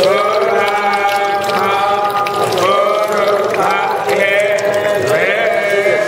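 Devotional chanting sung in long, wavering held notes, each sliding up into its pitch, phrase after phrase with short breaks, accompanying the ritual bathing of the guru's padukas.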